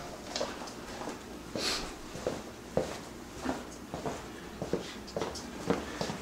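Irregular soft footsteps and knocks, about two a second, from a man in boots and a large dog moving about a quiet small room.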